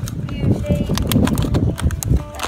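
Thin plastic water bottle crackling and clicking as it is twisted and squeezed in the hands.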